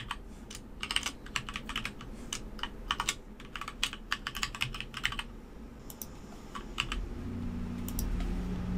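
Typing on a computer keyboard: a quick run of keystrokes for about five seconds, then a few scattered keystrokes near the end.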